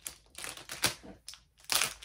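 Clear plastic packaging around a rolled wall scroll crinkling as it is handled and opened, in several short, sharp crackles with the loudest just before a second in.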